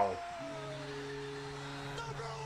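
A low, steady held tone with even overtones, fairly quiet, setting in about half a second in after a man's falling exclamation fades.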